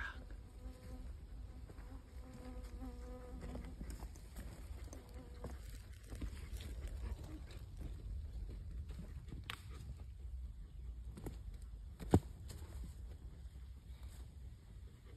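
A flying insect buzzing, a steady hum that lasts about five seconds and then fades out. About twelve seconds in comes a single sharp knock, the loudest sound, over a low rumble.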